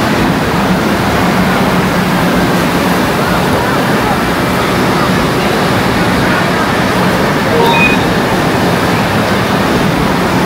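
Steady, dense background noise of a large indoor water park: rushing and splashing water mixed with the echoing chatter of a crowd, with no single sound standing out. A brief high-pitched call is heard near the eight-second mark.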